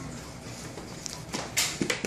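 Hands handling a chest-mounted action camera right at its microphone: a brief scrape about a second in, a longer, louder rubbing noise about one and a half seconds in, then a couple of clicks near the end as the top button is squeezed to stop recording.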